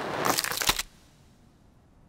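Cartoon sound effect: a rushing hiss that ends in a soft thud under a second in, followed by near silence.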